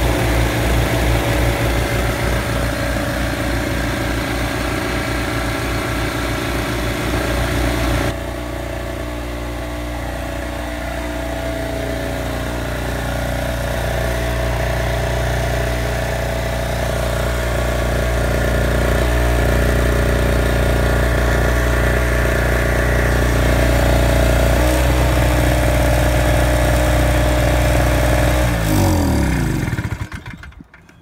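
Small two-stroke generator engine running; in the first stretch it is the failing StormCat 60338, smoking and with an uneven, pulsing beat. About eight seconds in the sound changes to a steadier engine note, and near the end the engine is switched off and its pitch falls away to a stop.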